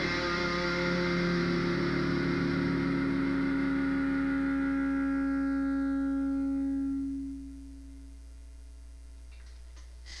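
Ibanez hollow-body electric guitar's last chord ringing out and slowly dying away, fading out about seven seconds in. A steady low hum is left after it, with a few faint clicks near the end.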